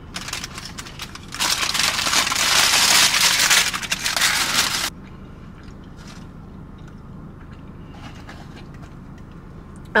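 Paper sandwich wrapper crinkling and rustling for about three and a half seconds, starting a little over a second in, after a few light taps.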